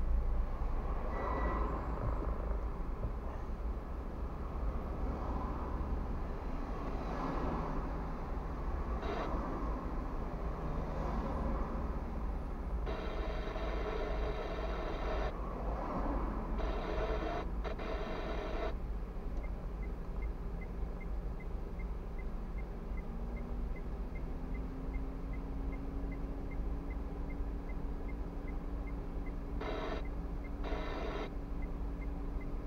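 Low rumble inside a car waiting in stopped traffic, picked up by a dashcam microphone. Around the middle comes a buzzing electronic tone lasting about six seconds. In the last ten seconds there is a faint quick ticking, about three a second.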